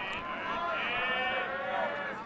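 Faint, distant voices shouting at the ballpark, picked up in the background of the broadcast, with high pitches that bend up and down.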